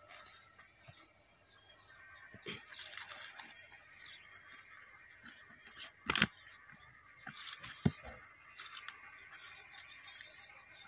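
A few short knocks and clicks of a hand handling the plywood lid of a wooden stingless-bee hive box, the loudest about six seconds in and a sharp one near eight seconds. A steady high-pitched drone goes on underneath.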